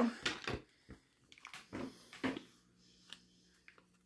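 A few soft crinkles and taps, louder in the first half, as a plastic package is handled and a fork is used to pick the last dried sea grapes out of it.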